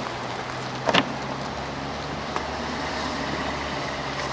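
Kayak gear being handled at a car's roof rack: one sharp knock about a second in and a fainter click later, over a steady low hum.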